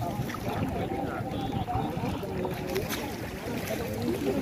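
Water sloshing and splashing as several people wade waist-deep through a river, pulling up water hyacinth by hand. Voices of the crew talking and calling are heard in the background.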